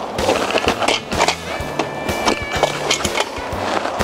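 Kick scooter's small wheels rolling and its deck clattering on asphalt, with several sharp knocks, over background music with a steady bass line.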